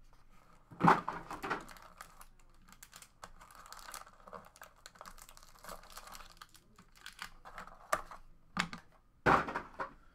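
Trading cards and their cardboard box being handled on a tabletop: light taps, clicks and rustling, with sharper knocks about a second in and again near the end.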